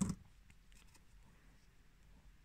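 A brief scissors sound at the very start, then faint handling noise of the yarn and crocheted piece.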